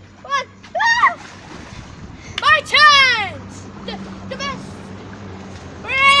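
Children's high-pitched shouts and squeals, a few short calls early on and a louder, longer squeal about halfway through, with water splashing in an inflatable paddling pool.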